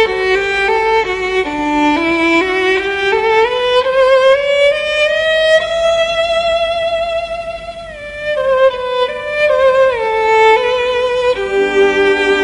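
Background music: a slow melody on a bowed string instrument, with a long note that glides slowly upward and is held in the middle before shorter notes return.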